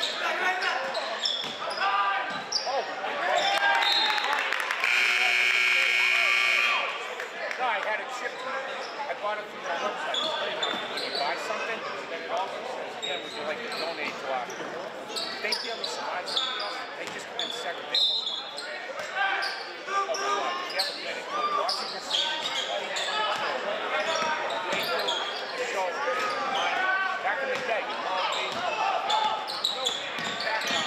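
Basketball bouncing on a hardwood gym floor amid players' and spectators' voices echoing in the gym. About five seconds in, the scoreboard horn sounds once for about two seconds, the loudest sound here, and play stops.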